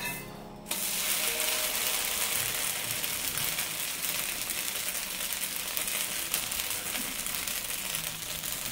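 Thin neer dosa frying on a hot tawa: a steady sizzling hiss that starts abruptly just under a second in.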